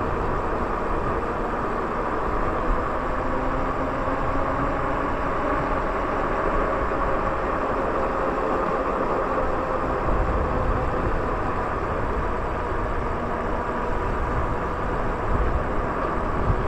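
Lyric Graffiti e-bike riding at steady speed: a steady rush of wind and tyre noise, with a faint steady whine from the electric motor.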